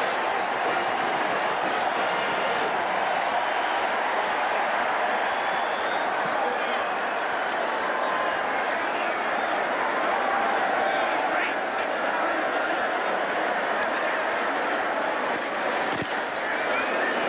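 Steady din of a large stadium crowd, a dense mass of many voices with no single one standing out.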